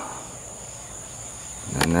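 Crickets chirping in a steady, high-pitched night chorus. A single sharp click sounds near the end.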